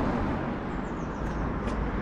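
Steady noise of road traffic, with a low rumble.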